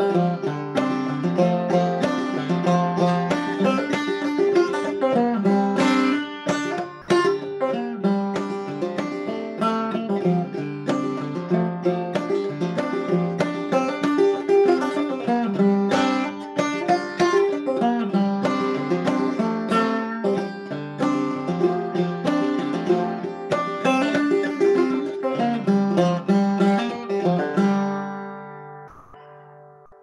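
Open-back banjo played solo in a driving old-time style, a steady stream of plucked notes. The playing stops near the end and the last notes ring out and fade.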